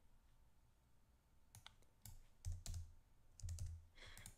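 Near silence, then a handful of faint, separate clicks from a computer keyboard in the second half, a few with a soft low thud.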